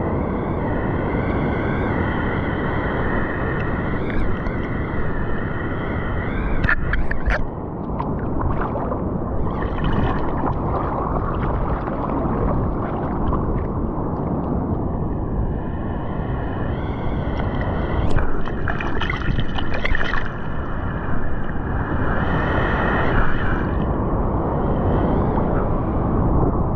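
Sea water sloshing and gurgling against an action camera held at the surface while a bodyboarder floats on the board, with a few sharper splashes about seven seconds in.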